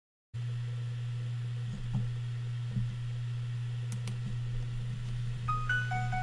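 A steady low hum with a few soft knocks. About five and a half seconds in, the music intro of the backing track begins with short, high notes.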